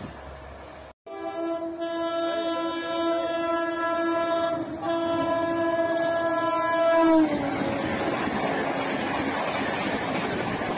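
WAP5 electric locomotive's horn sounded in one long blast of about six seconds as the express approaches at about 130 km/h. The horn's pitch drops as the locomotive passes, then comes the rush and clatter of the passing coaches.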